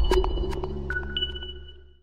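Electronic outro music for an animated logo: a few short high plinks that ring on as held tones, over a deep bass note, all fading out by the end.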